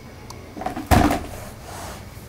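A single heavy thump about a second in, from a small child throwing himself down onto a carpeted floor.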